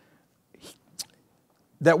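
A pause in a man's speech, holding a faint short breath about half a second in and a single lip smack about a second in. Speech resumes near the end.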